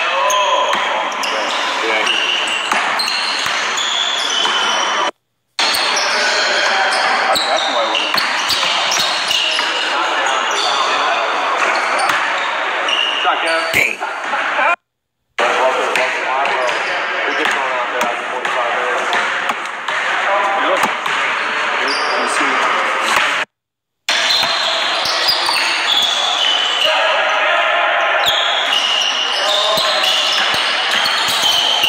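Basketballs bouncing on a hardwood gym floor during a pickup game, with players' voices talking and calling out in the echoing hall. The sound cuts out completely three times, briefly each time.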